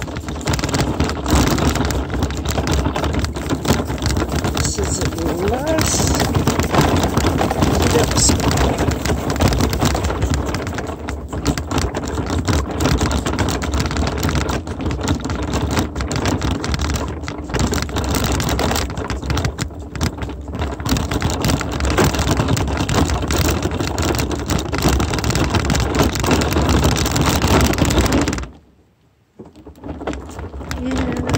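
Wheels rolling over a dirt-and-gravel driveway: a dense, steady crunching rattle with low rumble, cutting out abruptly for a moment near the end.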